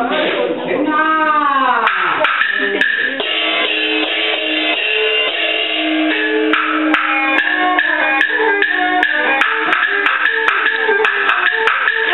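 Traditional Chinese shadow-puppet accompaniment. In the first two seconds a voice slides down in pitch in repeated glides. Then instrumental music takes over, with held notes and quick, sharp wood-block clicks.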